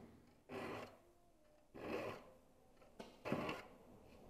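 Steel hand file drawn across the teeth of a crosscut handsaw to sharpen it: three faint rasping strokes, roughly one every second and a half.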